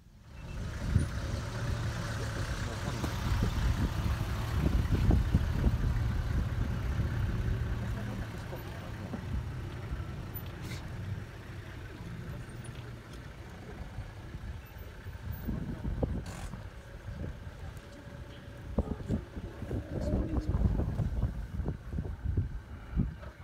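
Safari 4x4 vehicle engine running, a low steady rumble that is loudest for the first several seconds and then eases.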